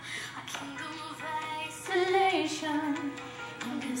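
Recorded music playing: a little girl singing a tribal-style chant, her melody rising and falling over a steady held note.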